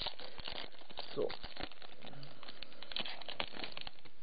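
Foil booster pack wrapper crinkling and trading cards being handled, a quick run of small crackles and clicks.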